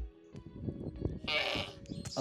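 A camel calf bleats once, briefly, a little past the middle, over background music.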